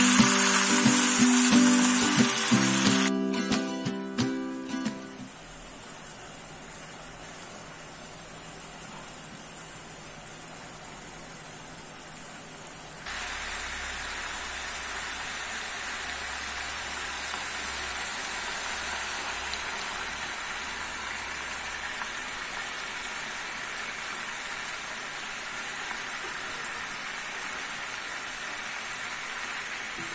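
Chicken pieces sizzling in hot oil in a pan, over background music that fades out in the first five seconds. About 13 seconds in, a louder, steady sizzling and bubbling sets in as the chicken cooks in its own juices.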